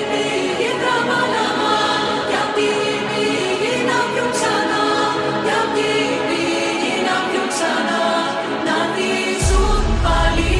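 Melodic house music in a breakdown: sustained, layered chords and melody with no bass, until a deep bass line drops in about nine and a half seconds in.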